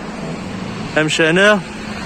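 Steady hum of street traffic, with a man's voice speaking briefly about a second in.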